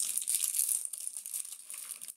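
Foil trading-card pack wrappers crinkling and tearing as packs of 2015 Bowman Draft baseball cards are ripped open and handled, a dense run of crackles.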